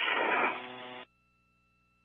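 Radio hiss on a spacewalk communications loop, at the tail of a transmission. It cuts off suddenly about a second in, leaving near silence.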